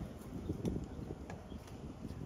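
Faint outdoor street ambience with a few light clicks.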